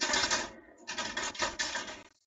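Glass marbles clattering against a plastic marble-tower game: a short rattle at the start, then a longer one from about a second in.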